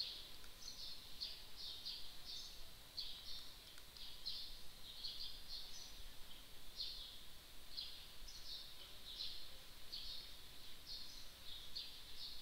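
Faint high-pitched chirping in the background, short chirps repeating irregularly a few times a second.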